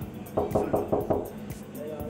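Knuckles knocking quickly on a dressing-room door, a run of about six knocks, with background music underneath.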